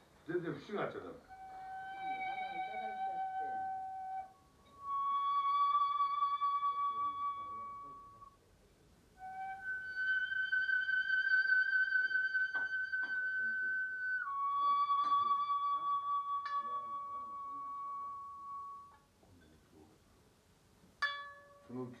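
A transverse flute playing four long held notes with a slight waver, first low, then stepping higher, higher again, and back down, each held for several seconds. A few words of speech come at the very start and again near the end.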